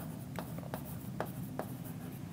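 Handwriting on a board: a series of short, faint strokes, about two a second.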